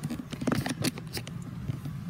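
Handling noise from an iPad being moved about: a quick run of knocks, taps and rustles, thickest in the first second, over a steady low hum.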